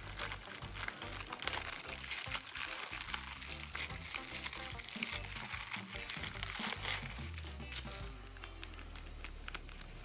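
Clear plastic zip bag crinkling and rustling as it is handled and opened, with the crinkling thinning out in the last few seconds; background music plays underneath.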